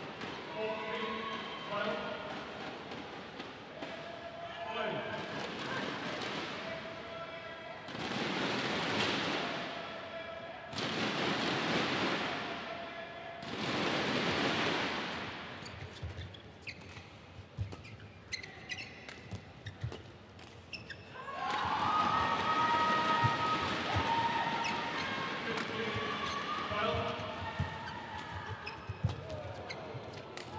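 A badminton rally ends and the arena crowd answers in three loud waves of cheering and applause. Then a new rally starts, with sharp pops of racquets striking the shuttlecock and shoes squeaking on the court mat, under crowd voices that swell again for a few seconds midway through the rally.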